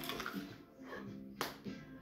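Background music, with one sharp crunch about one and a half seconds in from a bite into a raw onion.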